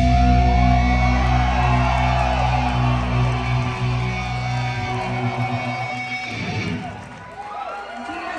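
A live rock band's final electric guitar and bass chord, held and ringing, cutting off about six seconds in as the song ends. Crowd voices yell and cheer over and after it.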